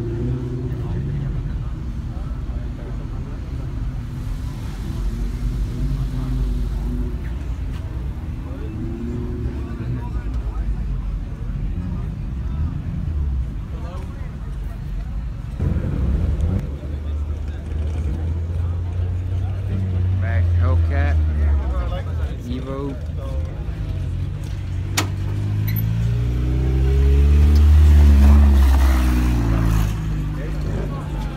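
Car engines running at idle with a low rumble. Near the end one engine revs up and down several times, the loudest part, as the car pulls out.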